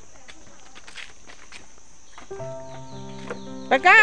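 Footsteps on a bamboo-slat boardwalk, faint scattered clicks under a steady high hiss. Background music with held notes comes in about halfway through, and a voice speaks near the end.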